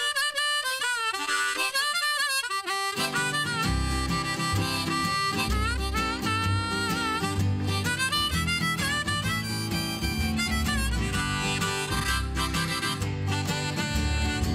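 Harmonica in a neck rack played over acoustic guitar, with an upright bass coming in about three seconds in.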